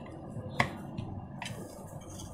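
Three sharp metallic clicks about a second apart, the first the loudest, from a screwdriver working the cover screws of a ceiling fan motor's metal housing.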